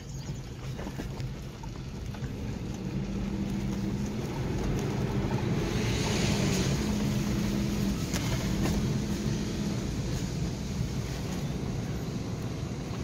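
Car engine hum and road noise heard from inside the cabin while driving, growing louder from about four seconds in.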